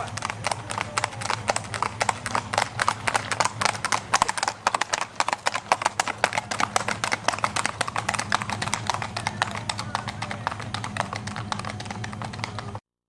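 Two horses' hooves clip-clopping rapidly on an asphalt road, a dense run of hard hoofbeats with no pause, over a low steady hum.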